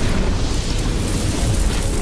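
Cinematic fire-and-explosion sound effect for an animated logo reveal: a loud, continuous rumble that eases slightly near the end.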